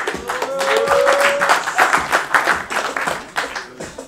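Music playing under a crowd clapping, the clapping heaviest in the middle and thinning out near the end. A single held note rises slightly over the first second and a half.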